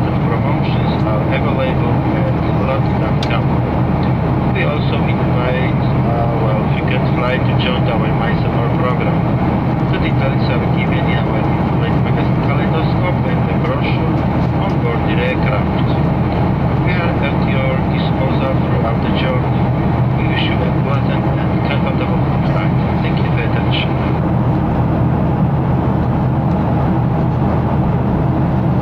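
Steady drone of a Boeing 737-500's CFM56-3 turbofans and the airflow around the fuselage, heard inside the cabin during the climb. Voices talk quietly in the cabin until near the end.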